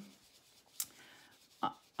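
Faint rubbing of a foam finger dauber swirled over card through a stencil as ink is blended on, with one short click near the middle and a brief voice sound just before the end.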